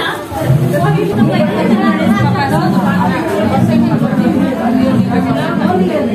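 Several people talking at once in a crowded room, a steady babble of overlapping voices with no single clear speaker.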